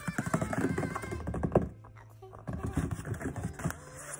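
A cardboard shipping box being handled and shifted on a surface: a run of short knocks and scrapes in two bursts, with a lull in the middle, over faint background music.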